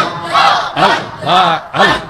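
Men chanting 'Allah, Allah' over and over in a rhythmic Sufi zikr, about two short chants a second, each rising and falling in pitch.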